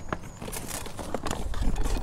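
A few short knocks and scrapes as a pot of freshly mixed soil is set back down inside its container.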